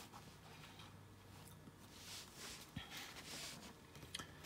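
Near silence: room tone with faint rustles and a light tap as hands set plastic markers down and pick up a paper note card.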